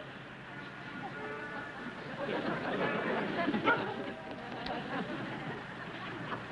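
Low background chatter of several voices, a little louder in the middle, with no one voice standing out.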